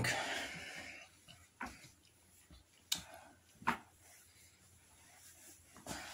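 Quiet handling sounds from a person shifting under a draped blanket: soft fabric rustling and three short knocks or clicks, about a second apart, in the first four seconds.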